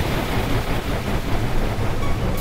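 Harsh experimental noise music: a dense, steady wash of noise with a heavy low end and no clear beat or melody.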